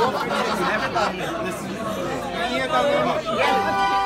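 A crowd of wedding guests chattering, several voices talking over one another. Near the end, music with long held notes starts up.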